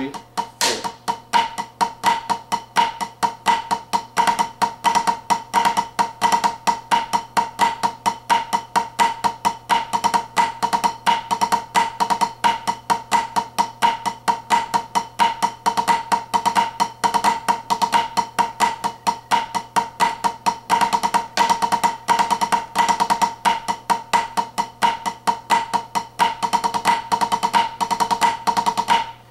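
Drumsticks playing a continuous flam rudiment exercise on a small tunable practice drum: flam accents run into cheese, flam drags, flammed fives and flammed five-stroke rolls. The strokes are rapid and even, and each one rings with a tight, pitched head tone.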